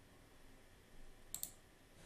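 Near silence, with a brief double click of a computer mouse about one and a half seconds in.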